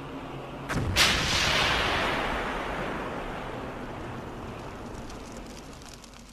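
Aerial bomb explosion: a sharp blast about a second in, then a long noisy tail that slowly fades over the next five seconds.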